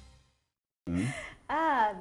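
Music fading out, a brief silence, then a woman's audible intake of breath followed by a short voiced sound that rises and falls in pitch.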